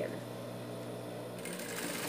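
Industrial straight-stitch sewing machine: its motor hums steadily, then near the end the needle starts running and stitches through the fabric for about half a second.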